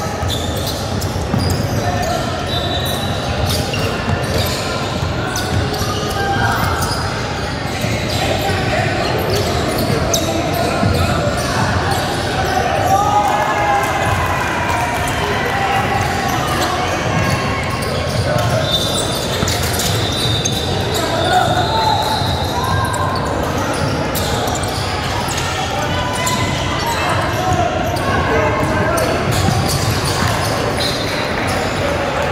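Basketball game in a large echoing gym: a ball bouncing on the hardwood floor, players' shoes squeaking briefly, and players and onlookers calling out over the play.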